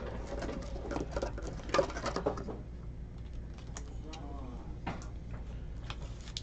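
Trading cards and their plastic sleeves being handled and shuffled by hand: soft rustling with scattered light clicks and taps.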